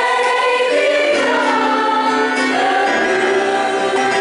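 Gospel choir singing held chords in several parts, moving to a new chord about halfway through.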